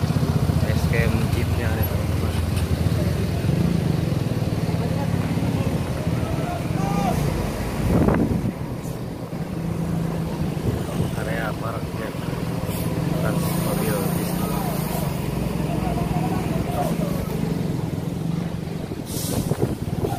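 Large diesel tour coaches running at low speed as they manoeuvre across a parking lot, a steady low engine drone with a swell about eight seconds in. Short high hisses of air come in about two-thirds of the way through and again near the end, typical of a coach's air brakes.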